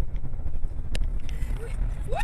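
Steady low rumble of a car's engine and tyres heard inside the cabin while driving, with a sharp click about a second in.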